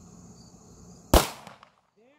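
A single 9mm pistol shot from a Tisas 1911: one sharp crack about a second in, with a short echo trailing off.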